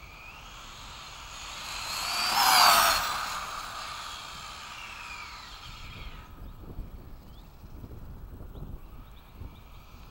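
RC car's motor whining as the car speeds up and then slows, the pitch rising to a peak about two and a half seconds in and falling away by about six seconds, with tyre noise on asphalt.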